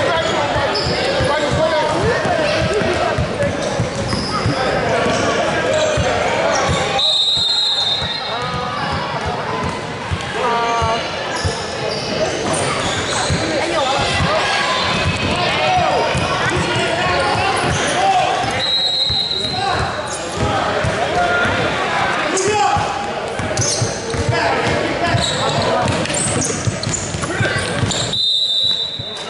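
A basketball being dribbled and bouncing on a hardwood gym floor, with players' and spectators' shouting voices echoing around a large gym.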